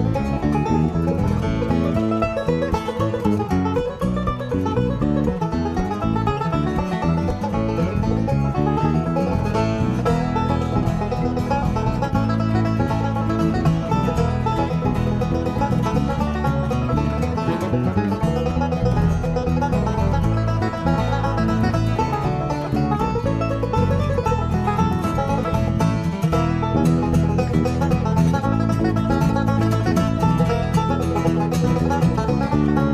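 An acoustic trio plays an instrumental. Banjo picking leads over strummed acoustic guitar and an electric bass line, steady and continuous.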